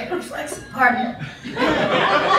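A woman chuckling and laughing in short bursts, her voice sliding up in pitch about a second in.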